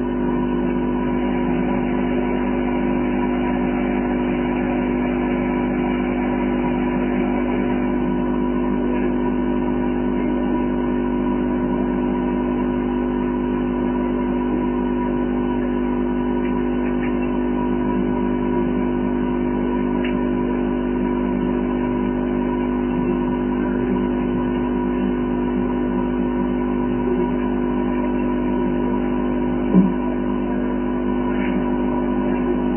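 A steady, unchanging hum of several held tones, with a single short click just before the end.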